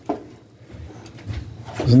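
Handling noise from a plastic magnetic work light being positioned against a bandsaw's metal housing: a click just after the start, then a few soft low knocks and rubbing. A man's voice starts near the end.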